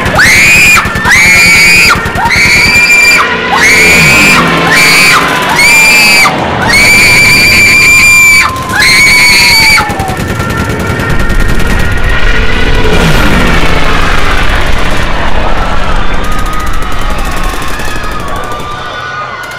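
Soundtrack of music mixed with battle sound effects: a run of high wailing tones broken into short segments, with several falling whistles, for about ten seconds, then a deep rumble for the rest.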